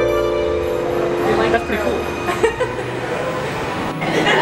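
Two held notes from a harp exhibit ring on together and end about a second and a half in, followed by indistinct voices.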